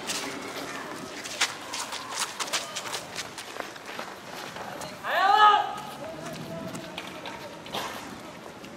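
A person's loud shout, one rising-then-falling cry about five seconds in, over a scattering of sharp clicks and knocks.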